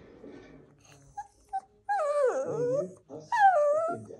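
Shih Tzu whining: two short high squeaks, then two long whines that slide down in pitch, the first the longer.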